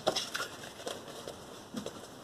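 Cardboard LP record sleeves being handled and shuffled against each other: a sharp knock at the start, then several lighter rustles and taps.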